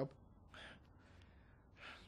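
A man's faint breaths in a pause between sentences: two short breaths, one about half a second in and one near the end.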